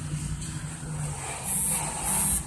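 A steady low mechanical rumble with a hum, with a short high hiss about one and a half seconds in.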